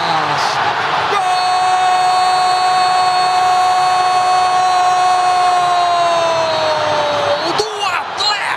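A male football commentator's long drawn-out goal cry, a "Goooool" held on one steady pitch for about six seconds, sliding down slightly in pitch as it ends.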